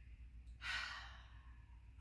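A woman breathing out audibly through her mouth: one long exhale that starts about half a second in and fades away over about a second, the mouth-out half of a slow nose-in, mouth-out breathing exercise.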